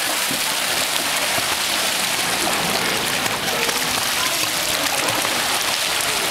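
Children kicking and splashing in a swimming pool: a steady, unbroken wash of churning, splashing water.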